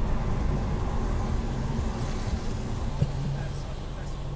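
Car interior noise picked up by a dash camera while driving: a steady low rumble of engine and tyres on a wet road, with a single click about three seconds in.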